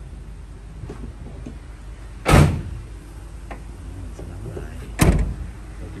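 Rear swing door of a JAC Sunray van: two loud thumps about three seconds apart, the second as the door is shut.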